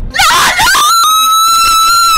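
A high-pitched human scream in a radio-drama fire scene: a short wavering cry, then one long held scream that drops in pitch at its end.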